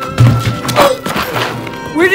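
A loud thunk of a body landing on a mattress laid on the ground, about a fifth of a second in, followed by smaller thuds, over background music.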